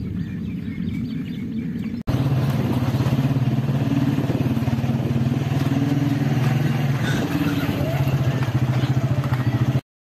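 A small motorcycle engine running steadily at an even speed. It starts abruptly about two seconds in at an edit cut and stops suddenly just before the end. Before it there is a quieter low rumble.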